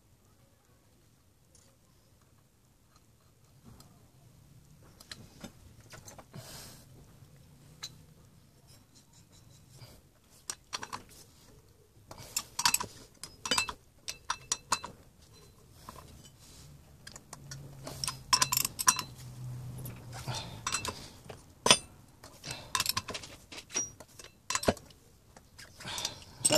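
Metallic clicks and clinks of a socket ratchet and sprocket nuts as a new rear sprocket is bolted to a motorcycle's rear wheel hub. The clicks start a few seconds in and come thicker and louder in the second half.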